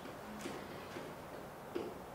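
Faint taps and ticks of a pen writing on an interactive whiteboard: a few light, scattered clicks, the sharpest near the end.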